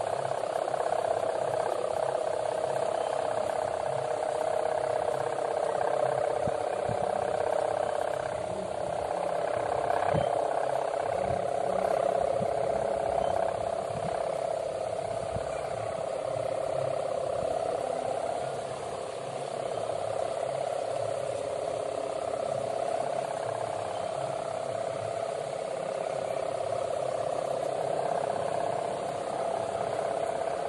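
Sendaren, the humming bow on a 4-metre gapangan kite, droning steadily in the wind aloft: one continuous buzzing tone that swells and eases a little in loudness.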